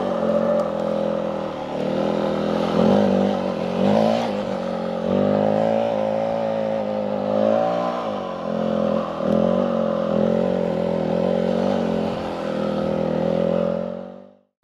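Yamaha WR250F dirt bike's single-cylinder four-stroke engine running, its revs rising and falling with the throttle and dipping briefly about eight seconds in.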